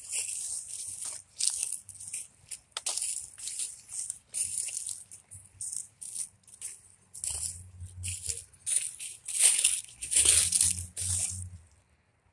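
Footsteps crunching and rustling through dry fallen leaves on grass, in irregular bursts, loudest about two-thirds of the way in. A low rumble comes in twice in the second half.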